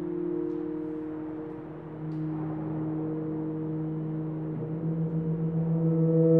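Tuba trio holding slow, sustained low chords. A new chord enters about two seconds in, and near the end the held notes beat against each other in a quick, even pulsing.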